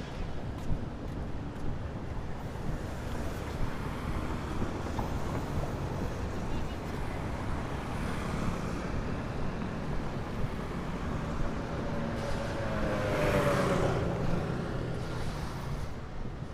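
City road traffic: a steady rumble of passing cars and scooters, with one vehicle going by close about three-quarters of the way through, its engine note falling as it passes.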